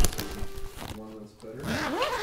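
A sharp click and brief rustle as a padded ukulele gig bag is handled at the start. After that, a voice holds a short 'mm' and then rises into speech near the end.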